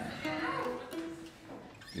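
A few soft, steady held notes from the string band's instruments, with faint voices underneath.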